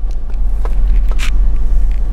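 Jeep Grand Cherokee V8 engine idling, heard from inside the cabin as a low steady rumble, with a couple of brief faint rustles.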